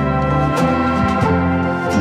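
Instrumental background music of sustained keyboard chords that change every half second or so, with light percussion ticks now and then.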